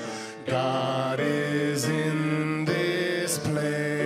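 Live song performance by a male vocalist over musical accompaniment, with long held notes. There is a short break about half a second in.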